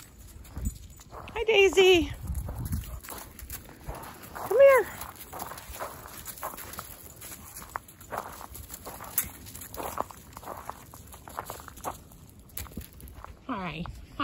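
Dog vocalising while playing: short whining calls near the start and a single yip about four and a half seconds in, with faint footsteps crunching on gravel.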